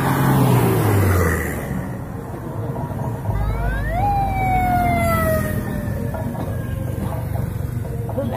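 Road traffic passing close by, a car and then motorcycles, with a siren giving one wail about four seconds in: it rises quickly and then falls slowly.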